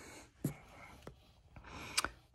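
A pause between spoken phrases: a few faint mouth clicks and a soft intake of breath near the end.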